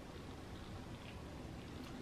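Quiet room tone: a faint steady hiss with no distinct sound.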